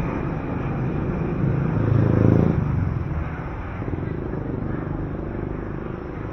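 City street traffic: a vehicle's engine passes close by, loudest about two seconds in and then fading, over the general traffic noise.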